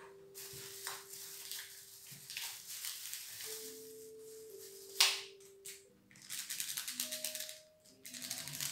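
Soft background music with long held notes, over handling noise from first-aid supplies and a plastic bag. There is a sharp click about five seconds in, and a run of rapid crackling near the end.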